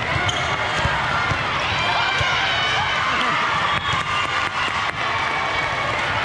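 Indoor volleyball play in a large, echoing hall: many voices of players and spectators calling and chattering over one another, with sharp ball impacts, several of them close together about four to five seconds in.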